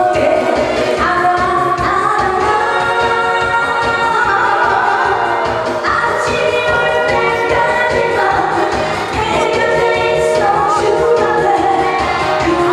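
A woman singing a Korean pop song into a microphone over an amplified backing band track with a steady beat.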